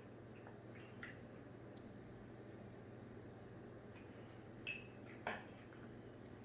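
Near silence with a faint steady hum while whisky is quietly sipped from a glass tumbler, then two short clinks near the end as the tumbler is set down on a stone-topped side table.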